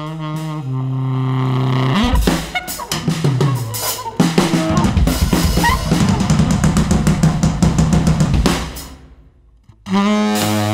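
Drum kit played busily from about two seconds in, a dense run of drum and cymbal hits that dies away shortly before the end.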